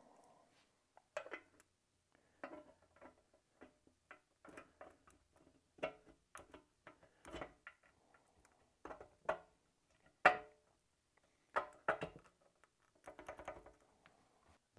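Light metallic clinks and taps, irregular and often a second or so apart, some briefly ringing: an aftermarket servo piston being handled and fitted into the lubed servo bore of an aluminium 48RE transmission case.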